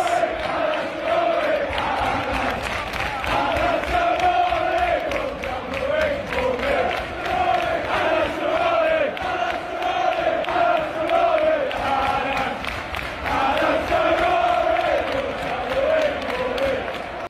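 A large crowd of Burnley football supporters singing a terrace chant in unison, many voices carrying a short tune that repeats phrase after phrase.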